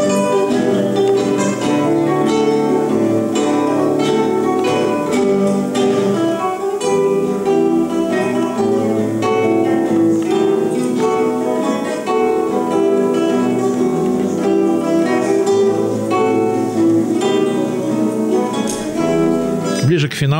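An ensemble of acoustic guitars playing a piece together: a continuous stream of plucked notes and chords.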